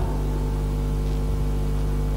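Steady electrical mains hum, a low buzz with a faint hiss over it and no other sound.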